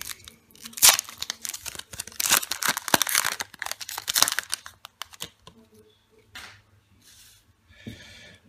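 Foil booster-pack wrapper being torn open and crinkled by hand, with a dense run of tearing and crackling and one sharp crack about a second in. It dies down to faint rustles after about five seconds.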